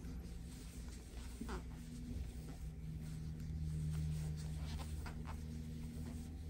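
Faint scratching and rustling of a crochet hook pulling thick plush yarn through stitches, a few light ticks scattered across it, over a low steady hum.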